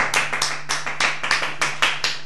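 Hands clapping in applause as a song ends: a quick, slightly uneven run of sharp claps, about five or six a second.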